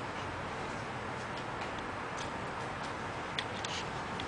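Steady hiss with a few faint, scattered clicks, and a small cluster of them near the end.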